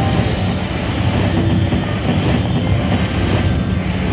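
Bao Zhu Zhao Fu slot machine tallying its bonus win: a dense, loud whooshing rumble of payout sound effects, with a bright accent about once a second as prize values are added to the climbing total.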